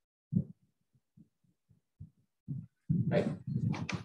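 A pause in a man's speech with a few short, soft, low sounds close to the microphone, then his voice returns with "Right" near the end.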